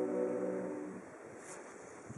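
A cappella vocal group holding the end of a sung chord, which dies away about halfway through and leaves only faint background noise.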